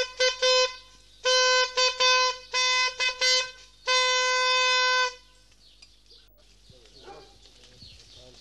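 A postman's small hand-held signal horn blown on a single steady note, in a run of short toots and then one long blast of about a second: the signal that the post has arrived in the village.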